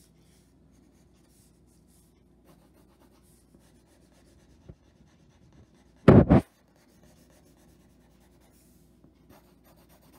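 Pencil shading on drawing paper on an easel: faint, quick scratchy strokes as the graphite is pressed harder to darken one face of a cube. About six seconds in there is a loud, short double thump.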